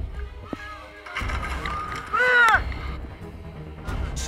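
Background music with a low, steady pulse. About two seconds in, a person's high-pitched cry rises and then falls away.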